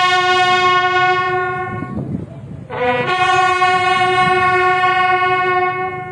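A military bugle call on a brass instrument. A long held note fades out about two seconds in. Just under a second later comes a short higher note, which leads into another long held lower note lasting to near the end.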